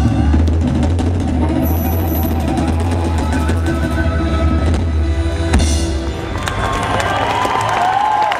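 Live folk-rock band with drum kit ending a song on a drum roll over a heavy low sustain, breaking off about six seconds in. The crowd's cheering follows.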